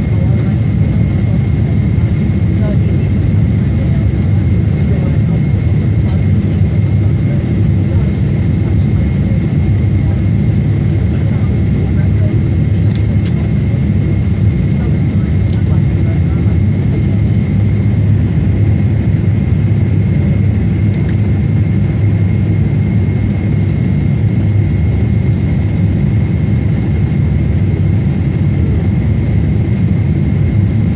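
Jet airliner cabin noise during the landing approach: a steady low rumble of engines and airflow with a thin steady whine over it, and a few faint clicks in the middle.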